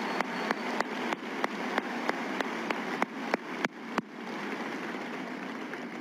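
Large audience applauding in a big hall. A few close claps stand out, about three a second. The applause thins out after about four seconds and fades away near the end.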